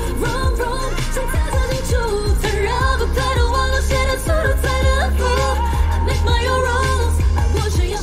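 A live Mandarin pop song: a woman sings the lead into a microphone over a backing track with a heavy bass beat.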